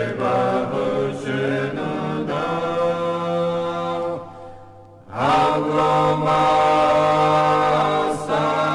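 Choir singing unaccompanied church chant in long held chords of several voices. It fades away about four seconds in, and a new chord begins just after five seconds.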